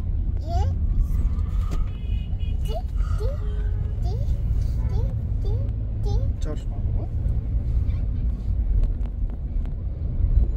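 Steady low rumble of a moving car heard from inside the cabin, with a toddler making short rising vocal sounds, roughly one a second.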